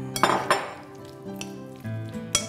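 A metal spoon scraping and clinking a few times against a ceramic bowl as diced tuna and avocado are mixed, over steady background music.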